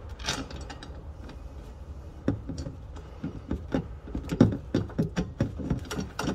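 Small metal clicks and taps of a bolt being worked by hand into a freshly drilled hole in the floor pan, sparse at first and busier and louder from about two seconds in.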